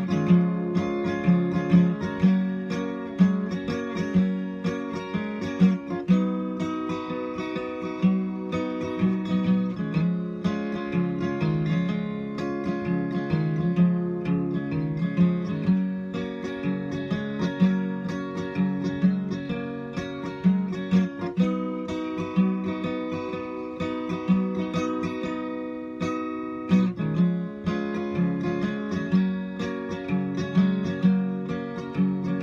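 Acoustic guitar strummed and picked in a steady rhythm: an instrumental break in a song, with no singing.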